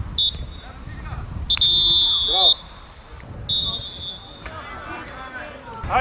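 Referee's whistle blown three times: a brief pip, then a blast of about a second, then a shorter one, stopping play for a free kick. Players' shouts come between the blasts.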